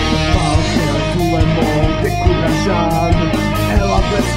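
Instrumental passage of a rock song: guitar lines over a regular beat, with no singing.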